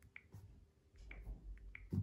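A few faint, short clicks and light taps from fingers handling a smartphone and touching its screen, with a low rumble of handling from about a second in.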